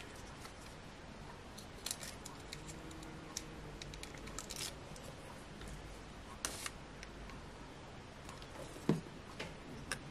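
Faint scattered clicks and rustles of fingers handling card and peeling adhesive foam pads.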